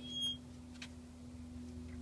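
Steady low electrical hum of running pool equipment, with a brief high chirp near the start and a faint click a little under a second in.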